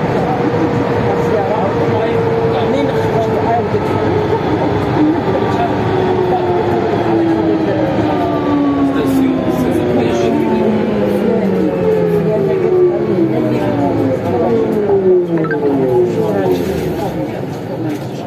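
Rubber-tyred Siemens VAL 208 NG automated metro train slowing into a station. The traction drive's whine falls steadily in pitch, several tones sliding down together over the running rumble, and fades as the train comes to a halt near the end.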